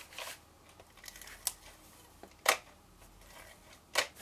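Fast Fuse adhesive applicator being run over cardstock, giving a few sharp clicks with faint rustling of card between them. The loudest click comes about halfway through.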